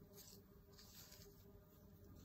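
Near silence, with faint soft rubbing of a cloth over a small clay piece held in the hands, coming and going a few times.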